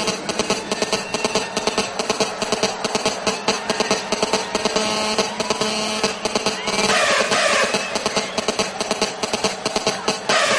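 Hardstyle dance track with a steady, hard-hitting kick drum beat, and a cluster of falling tones about seven seconds in.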